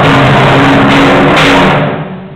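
Timpani played very loudly in a sustained roll together with piano, overloading the recording; the roll breaks off shortly before the end and rings away.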